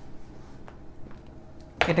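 Faint scrubbing of a felt duster wiping marker off a whiteboard, with a few light ticks, before a man's voice cuts in near the end.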